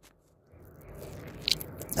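A man's faint mouth and breath noise in a pause between his sentences: a soft breath that grows louder, with a small mouth click about one and a half seconds in.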